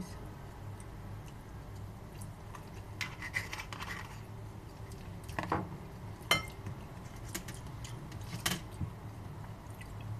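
Eating sounds at a table: chewing, with scattered small clicks and scrapes of a fork against a bowl, the sharpest a few single clicks in the second half, over a low steady hum.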